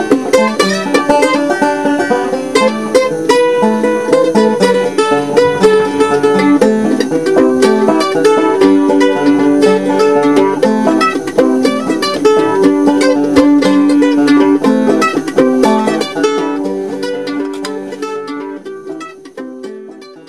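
Banjo picking a tune, a dense run of plucked notes, fading out over the last few seconds.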